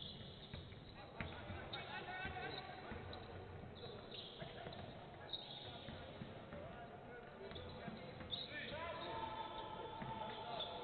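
Basketball court sound: a ball dribbled on a hardwood floor, with sneakers squeaking in short high bursts a few times and players' voices calling out.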